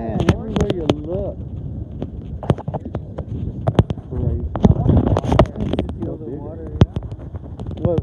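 People talking, with frequent sharp clicks and knocks and a steady low rumble underneath.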